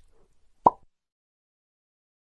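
A single short pop about two-thirds of a second in, dropping slightly in pitch.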